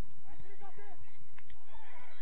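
Distant shouting voices of players and spectators at an outdoor soccer match: short, rising-and-falling calls, with a single sharp knock about one and a half seconds in.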